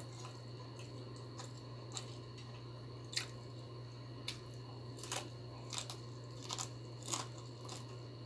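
Close-miked eating sounds of a person chewing mouthfuls of rice and sautéed bitter gourd with egg, eaten by hand, with short sharp mouth clicks and smacks every half second to a second, more frequent after the first few seconds. A steady low hum runs underneath.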